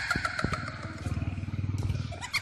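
Motorbike engine running as the bike passes close by, a rapid, even low pulsing that swells and then fades near the end.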